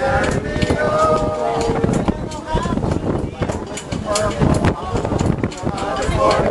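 People's voices talking and calling out over rough wind noise on the microphone, with short gusts and knocks throughout.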